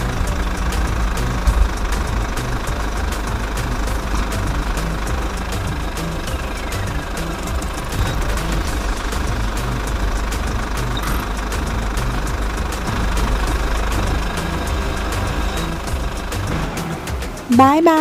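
A school-bus engine sound effect running steadily, with music underneath.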